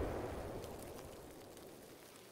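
The tail of a boom sound effect fading steadily away, a low rumble with faint crackling.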